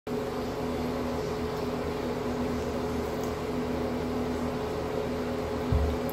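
Steady machine hum holding two tones over a low rumble, as from a fan or air-conditioning unit running in a small room; a low thump comes near the end.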